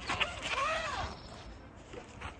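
Zipper on a fridge's padded fabric cover being pulled open in one long stroke. Its rasp rises and then falls in pitch as the pull speeds up and slows.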